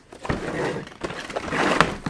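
Lid of a snug white cardboard box being slid off its base: a dry sliding rustle, loudest near the end, finishing with a sharp click.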